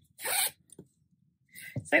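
A zip on a crocheted clutch bag pulled shut in one quick rasp lasting about a third of a second, shortly after the start.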